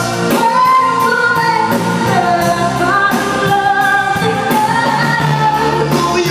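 Live band playing a pop cover: sung vocals with long held notes over electric guitar and drums, with a steady beat.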